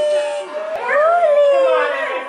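A fussy toddler whining and crying in one high-pitched wail that rises and then falls, about a second in.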